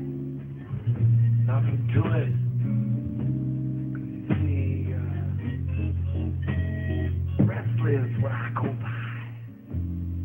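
Instrumental backing music between spoken verses: held bass notes that change every second or two, under guitar and other instruments, with sliding high notes about two seconds in and again near the end.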